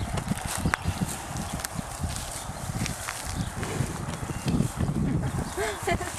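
Holstein heifers feeding at a hay bunk: irregular low knocks and thuds as they jostle and pull at the hay against the metal rails.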